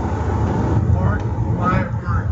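Low, steady road and engine rumble inside a police car's cabin as it drives, with a man's voice over it.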